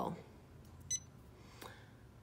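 A short electronic beep from the Janome Memory Craft 550E's touchscreen as a key is pressed, about a second in, followed by a faint click.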